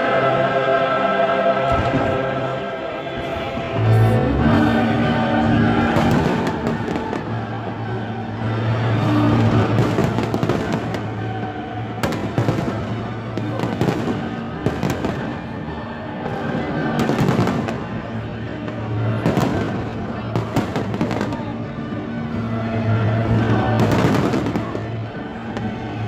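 Aerial fireworks bursting in a long series of sharp bangs that come thicker in the second half, over loud music with held notes playing throughout.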